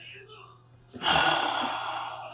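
A man letting out a loud, breathy sigh that starts suddenly about a second in and fades away over a second and a half.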